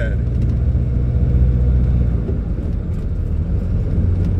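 Heavy truck's diesel engine droning low inside the cab while the truck drives along. The deepest part of the drone eases off about two seconds in.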